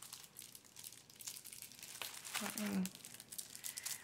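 Crinkling and rustling of handled wrapping as a gift is turned over in the hands, in irregular crackles, with a brief murmured voice a little past halfway.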